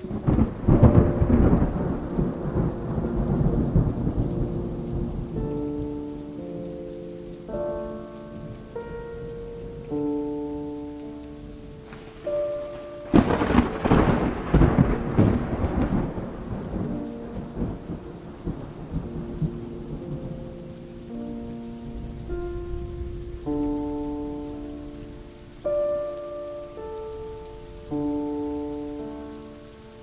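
Thunder rolls twice over steady rain: once at the very start, fading over several seconds, and again with a sudden crack about thirteen seconds in. A slow instrumental melody of single held notes plays underneath throughout.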